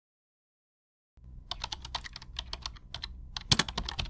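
Quick, irregular footsteps of running shoes on gritty concrete close to a ground-level microphone, sharp clicks several a second with one louder strike near the end, over a low wind rumble. It starts abruptly about a second in.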